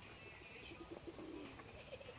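Faint bird calls over a quiet outdoor background.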